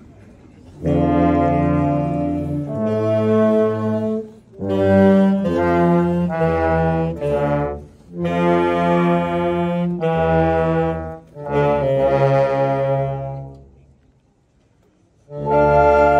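Small wind band of saxophones, clarinets, flute and low brass playing slow, sustained chords in phrases of a few seconds each. The music stops for about a second and a half near the end, then comes back in.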